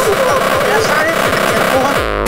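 Extratone electronic music: a very fast, unbroken stream of distorted kick drums, each one a short downward pitch sweep, many per second, with a wavering pitched layer riding above them.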